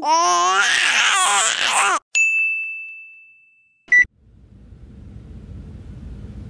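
An infant crying, which stops abruptly about two seconds in and gives way to a bright chime that rings out for about a second and a half. A short beep follows, then the low, steady road and wind hum inside a second-generation Nissan Leaf's cabin at highway speed fades in.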